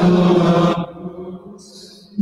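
A single voice chanting a long held note that stops just under a second in and rings on in the church's reverberation. A brief hissing consonant follows near the end.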